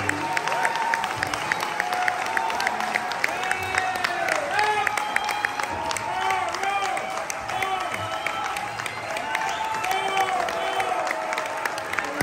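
Audience applauding and cheering, with many short rising-and-falling whoops over the clapping.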